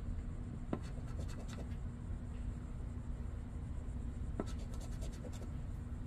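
A coin scratching the latex coating off a scratch-off lottery ticket in short, irregular rubbing strokes, with a small click now and then.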